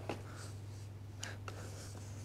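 Faint rustling and a few light ticks as the folded Maxi-Cosi Leona 2 compact stroller's fabric and frame are handled, over a steady low room hum.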